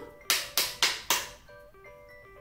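Four quick knocks, about a quarter second apart, a knocking sound announcing someone at the door, over soft background music.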